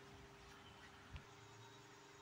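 Near silence: room tone with a faint steady hum and one soft tick about a second in.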